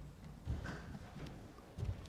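A few soft, dull thumps with faint clicks, one about half a second in and a stronger pair near the end.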